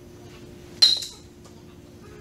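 A single sharp metallic clink with a short ringing tone, about a second in, over a steady faint hum.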